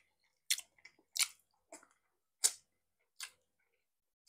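Close-miked mouth sounds of eating oven-baked pork rib meat: about five short chewing clicks and lip smacks, roughly one a second, with quiet between them.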